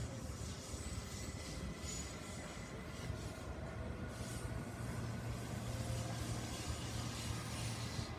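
Steady low rumble of traffic from the surrounding city, with a faint hiss above it, swelling slightly during the second half.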